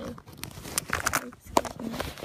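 Close-up handling noise: rustles and small clicks as hands move small plastic toy figures about right by the microphone, with a few brief voice sounds.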